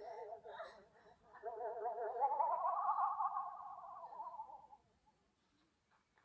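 Warbling electronic sci-fi sound effect of a transmat machine being worked: a fast-wavering tone that swells about a second and a half in, rises in pitch midway, then fades out about a second before the end.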